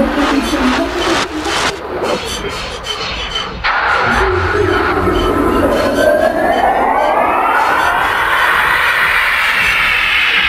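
Dark techno in a breakdown with the kick drum thinned out. Nearly four seconds in, a layered synth sweep enters and climbs steadily in pitch, building tension.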